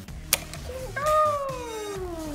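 A sharp click, then about a second in a long vocal sound that slides steadily down in pitch.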